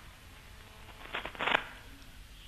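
Quiet studio room tone with two short, soft noises about a second and a half in.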